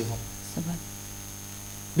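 Steady electrical mains hum on the studio sound, with a word ending just at the start and a faint brief voice sound about half a second in.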